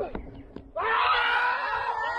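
A light knock about half a second in, then several cricket fielders shout together in one long, loud appeal.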